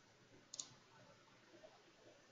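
A single computer mouse click about half a second in, against near silence.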